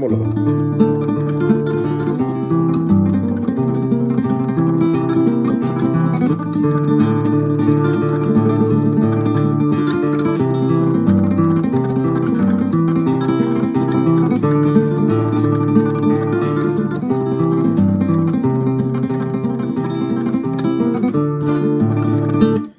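Nylon-string classical guitar played solo in a cumbia rhythm using right-hand tremolo. The thumb picks a moving bass line while the ring, middle and index fingers pluck each melody note in quick repeats.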